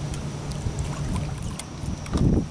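Steady low rumble and hum of wind and water around a small boat out on the river, with a few faint ticks.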